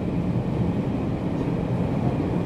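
Running sound of 413-series EMU motor car MoHa 412-7, with MT54 traction motors, heard aboard: a steady low rumble of the wheels, rails and running gear at an even speed.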